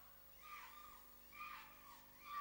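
Near silence: room tone with a faint steady hum, and faint distant voices rising twice.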